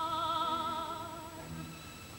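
A soprano holds one long high note with wide, even vibrato over a soft orchestral accompaniment, the note fading toward the end. It is an early-1930s opera film soundtrack.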